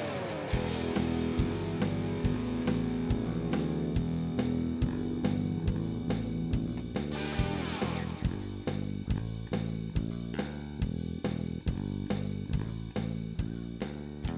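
Background music led by guitar and bass over a steady drum beat.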